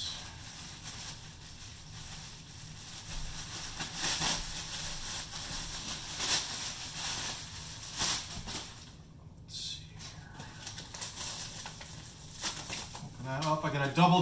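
Clear plastic packaging bag rustling and crinkling as it is pulled off and crumpled, in irregular handling noise with a few louder crackles.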